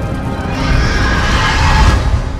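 Horror-intro music over a low rumble, with a horse whinny sound effect that comes in about half a second in and is loudest near the end.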